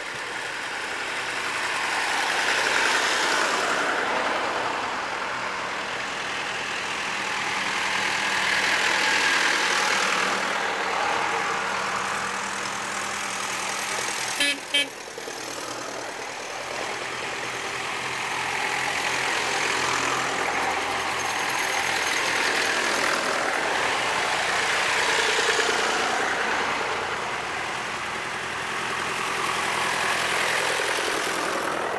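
Vintage tractors driving past one after another, their engines chugging. The sound swells as each tractor comes close and fades as it goes by, several times over.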